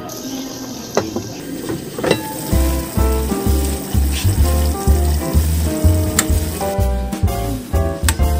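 Chayote tops and ground pork sizzling as they fry in a metal pan, with a few sharp taps of the metal spatula against the pan. Background music plays over it, and a heavy bass beat comes in about two and a half seconds in and becomes the loudest sound.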